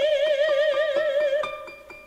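Soprano holding one long note with vibrato over harp notes plucked beneath it; the voice fades about a second and a half in, leaving the harp notes ringing.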